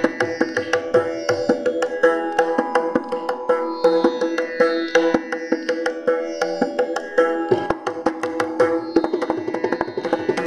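Carnatic violin duet with mridangam accompaniment: the violins play melody over a steadily held pitch while the mridangam strokes come thick and fast throughout.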